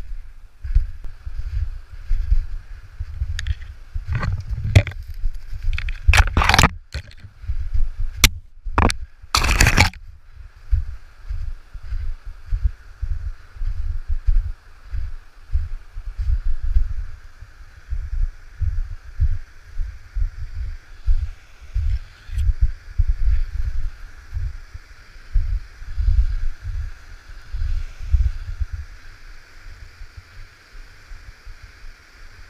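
Kayak hull sliding and scraping over snow in jerks, with a steady series of low bumps and a cluster of loud, sharp scrapes and knocks about 4 to 10 seconds in. From about 10 seconds on, a steady rush of moving water sits underneath.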